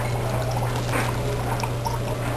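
Dry ice bubbling in a glass of soapy water: a continuous fizzing gurgle scattered with small pops, over a steady low hum.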